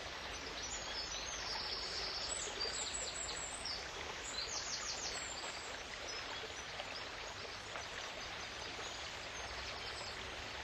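Steady rush of flowing river water, with small birds singing high trilled phrases over it, mostly in the first half and again briefly near the end.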